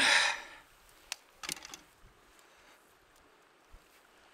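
A breathy exhale that fades within about half a second, then a few faint clicks of fingers handling the fishing line and fly, then near quiet.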